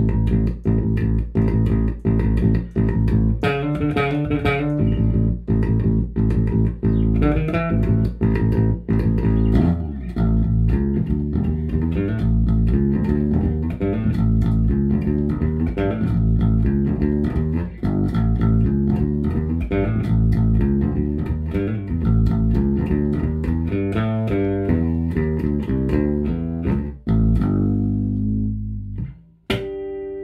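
Electric bass, a Sandberg California 25th Anniversary with Häussel Tronbucker pickups, played through a Tech 21 VT Bass pedal into a Fender Bassman TV15 combo amp. A steady stream of fast plucked notes stops near the end, then one note rings out.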